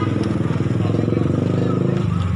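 A motor vehicle engine running close by: a steady low drone with a fast, even pulse.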